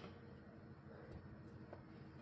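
Near silence: quiet room tone with two faint small clicks.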